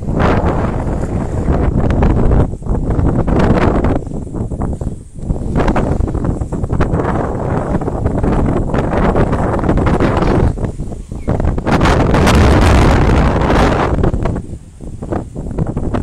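Wind buffeting the microphone in strong, loud gusts, a rough rumbling noise with a few short lulls, easing off near the end.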